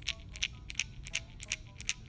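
Megabass X-Pod hard-plastic topwater lure shaken by hand, its loose internal knocker weight clacking against the hollow body several times a second, each knock ringing briefly.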